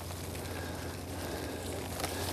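Faint, steady background noise with a low hum underneath and no distinct events.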